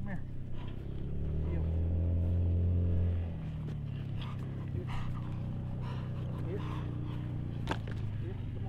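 A motor engine runs steadily with a low drone, swelling louder from about one second in to about three seconds, then settling back. A single sharp click comes near the end.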